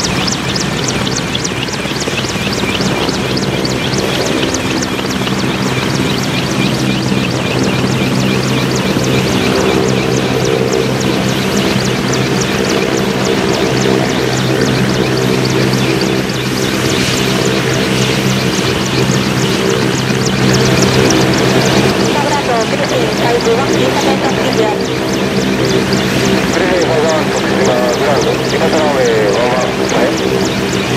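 JMSDF MCH-101 (AW101 Merlin) three-engine helicopter running on the ground with its rotors turning: a steady, loud turbine and rotor drone with a fast beat of blade passes over it.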